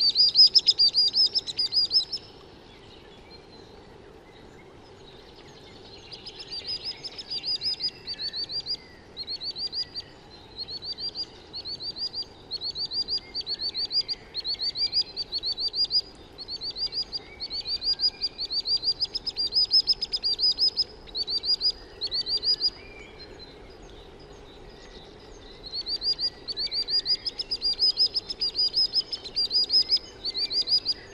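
Common sandpiper singing: rapid, high-pitched trilled phrases of about a second each, repeated in runs over a steady low background noise. The song pauses for a few seconds about two seconds in and again a little past twenty seconds in.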